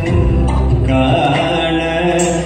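Indian classical dance music, a chant-like vocal line with instrumental accompaniment, playing continuously.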